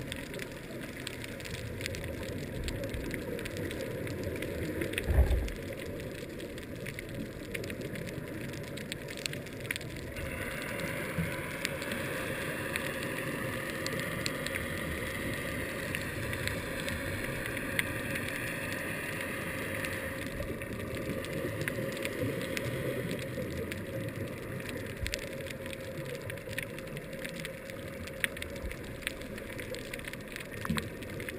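Underwater reef ambience: a dense, steady crackle of snapping shrimp clicking. There is a low thump about five seconds in, and a soft hiss rises in the middle third.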